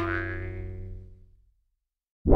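Cartoon "boing" sound effect: a twanging pitched tone ringing out and fading away over about a second and a half.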